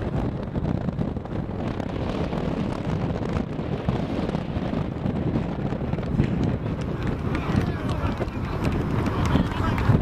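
Wind rumbling on the microphone over indistinct, overlapping voices of football players talking.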